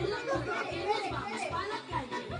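Excited chatter and laughter from a group of women talking over each other, with music and its steady beat playing underneath.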